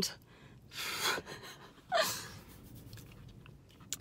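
A woman's short breathy laughs, two puffs of breath about one and two seconds in, with quiet car-cabin room tone between them.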